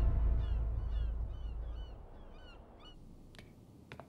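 Gulls calling over a harbour: a run of short cries, about two a second, through the first three seconds, over the tail of orchestral music fading out. A few faint footsteps on stone near the end.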